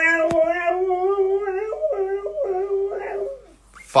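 Siberian husky howling: one long, wavering howl that steps up and down in pitch and stops about three and a half seconds in. A brief click sounds just after it begins.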